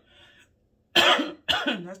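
A woman coughing twice in quick succession, about a second in, set off by the hot sauce on her food.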